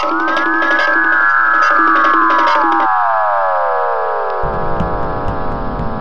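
Electronic synthesizer sound effect: a cluster of tones that glide up, then sink slowly in pitch over several seconds. A quick run of short beeps underneath stops about three seconds in, and a low rumble enters after about four and a half seconds.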